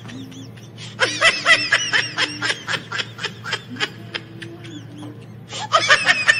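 Rapid, high-pitched "ha-ha-ha" laughter, starting about a second in and dying away about four seconds later, with a second burst starting near the end.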